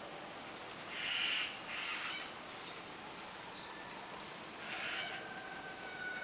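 Faint bird calls, a few short high chirps and some softer calls, over a steady outdoor background hiss.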